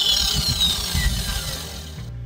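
Electric angle grinder with its disc against a concrete-block wall, grinding the hardened cement. It starts abruptly; its high whine drops in pitch and fades over the two seconds.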